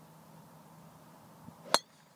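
A golf driver striking a ball off the tee: one sharp, loud metallic crack about three-quarters of the way through, just after a short swish of the club.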